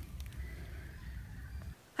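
Faint low background rumble that cuts off abruptly just before the end, at an edit.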